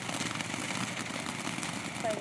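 Ground fountain firework spraying sparks: a steady hiss with fine crackling.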